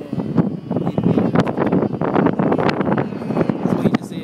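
Strong gusty wind buffeting the microphone: a loud, uneven rushing rumble.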